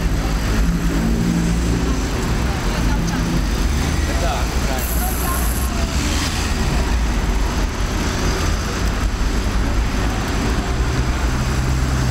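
Steady city street traffic noise with low rumble as a large group of cyclists rides past alongside cars, with indistinct voices of riders and bystanders. A brief high hiss about five seconds in.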